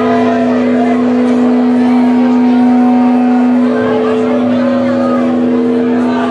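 A loud, steady droning note from the band's amplified instruments, with a second pitch above it; the lower note drops out a little before four seconds in as other held notes come in, over crowd chatter.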